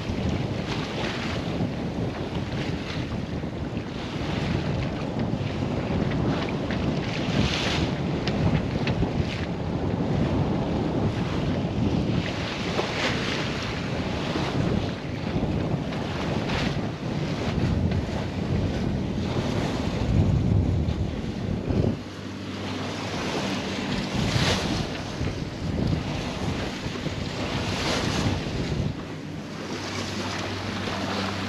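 Wind buffeting the microphone over water rushing along the hull of a sailboat under way, with occasional louder splashes. About 22 s in, the low rumble drops and a steady low hum comes in.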